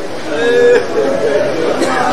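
People's voices: speech with chatter in the background, with a brief raised voice about half a second in.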